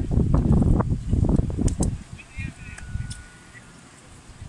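Several voices talking and calling over one another, loud for the first two seconds and then dropping away, with a thin steady high tone lasting about a second near the end.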